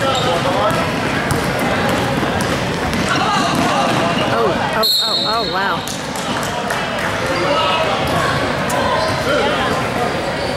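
Basketball game in a gym: the ball bouncing on the hardwood and sneakers squeaking, under the voices of players and spectators echoing in the hall. The sound drops out briefly about halfway through.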